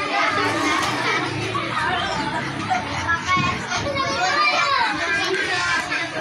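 Several children's voices talking and calling out over one another at once, with no single voice standing out.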